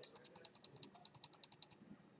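Faint computer mouse clicks in quick succession, about eight a second, stopping near the end: repeated clicks on a spin-box arrow to step a value up.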